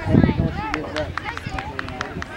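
Voices and calls from players and spectators around a youth soccer field, with a brief low rumble on the microphone at the start and scattered sharp clicks.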